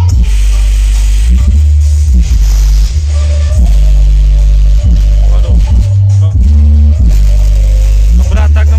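Very loud bass-heavy trap music played through a large outdoor sound system with stacked subwoofers, its deep bass notes changing about once a second under sliding synth lines.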